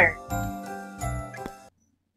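Background music with chiming, tinkling tones that cuts off suddenly most of the way through.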